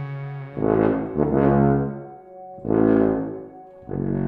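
Tuba playing three loud low notes over a sustained electronic backing track.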